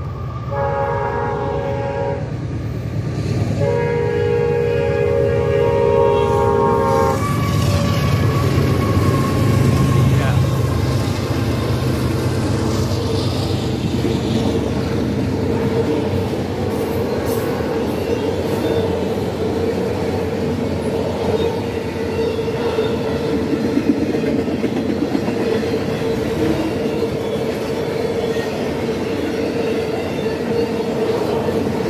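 Freight train's locomotive horn sounding two blasts for a grade crossing, a short one and then a longer one lasting about three and a half seconds. Then the train's autorack cars roll past steadily on the rails.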